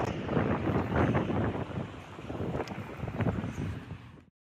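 Wind buffeting a phone microphone outdoors: an uneven rush that comes in gusts, dropping away near the end.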